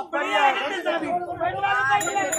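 Speech: a performer's voice delivering stage dialogue, with no other sound standing out.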